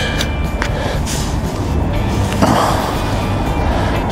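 Wind rumbling on the microphone, with a short burst of scraping in wet beach sand about two and a half seconds in as a coin is dug out by hand.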